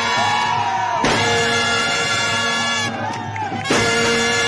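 Band music: a wind melody wavers and bends over a steady held note. Sudden loud hits come about a second in and again near the end.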